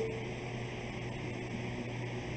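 Steady room tone: a low hum under an even hiss, picked up by the pulpit microphone.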